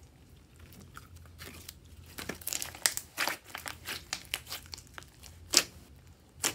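Hands squeezing and kneading a large mass of glossy slime, giving irregular sticky crackles and pops. It is quiet for about the first second and a half, then busier, with the loudest pop about five and a half seconds in.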